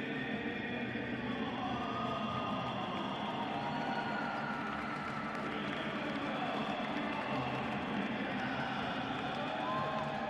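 Steady ambience of a sports hall: a murmur of crowd and reverberant sound through the hall, with faint gliding tones over it and no clear single event.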